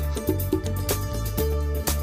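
Background music: drum hits over sustained bass and instrumental notes, at a steady level.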